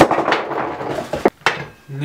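Plastic food packaging rustling as it is handled, then two sharp knocks as things are set down on the kitchen counter.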